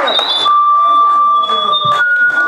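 Microphone feedback from a PA: steady, pure high whistling tones, a higher one from the start and a stronger, lower one that comes in about half a second in and holds, over faint chatter.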